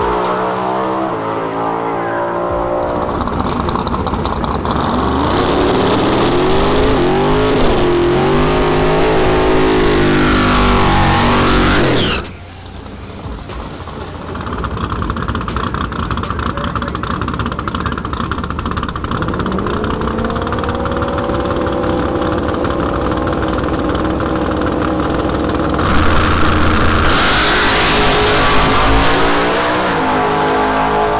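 Drag race cars' engines at full throttle on passes down the strip, with music mixed in. The sound drops out abruptly about twelve seconds in, builds back with a rising engine note, and the loudest stretch comes near the end.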